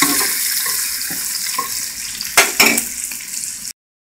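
Beef pieces sizzling in hot oil in a frying pan, easing off a little, with a couple of sharp knocks about two and a half seconds in. The sound cuts off suddenly near the end.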